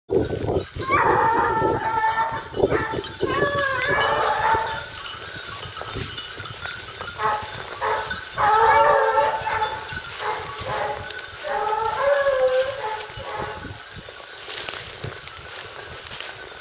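A pack of Porcelaine hounds baying in about five separate bouts, each about a second long, giving tongue as they hunt a hare.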